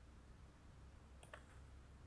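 Near silence over a low room hum, with a few faint clicks at the computer a little over a second in and one more near the end.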